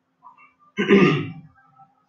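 A single short vocal sound from a person, not words, about a second in, lasting under a second.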